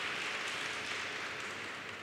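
Steady arena background noise, an even hiss-like wash with no words or distinct claps, slowly fading toward the end.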